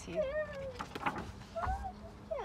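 A page of a large hardcover photo book being turned, with short wordless voice sounds that slide in pitch just before and after.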